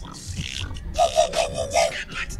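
Live human beatboxing: a breathy hiss, then about a second in a pitched, warbling vocal pattern pulsing about five times in under a second.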